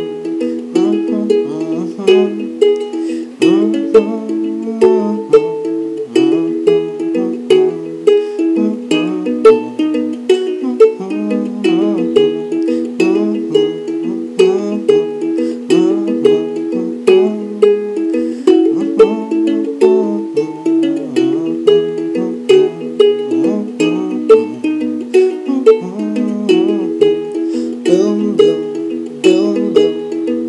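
Kamaka HF-1 soprano ukulele fingerpicked, playing an instrumental break of an eleven-bar blues: a steady run of plucked notes, several a second, over a repeating bass pattern.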